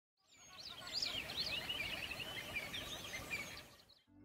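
Several small birds chirping and singing at once, many quick high chirps and whistles over a steady outdoor hiss. The sound fades in just after the start and fades away near the end.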